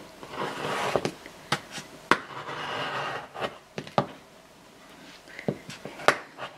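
Rotary cutter trimming fabric along an acrylic ruler on a cutting mat: a soft continuous cutting noise through the first half, with scattered light clicks and taps of the cutter and ruler.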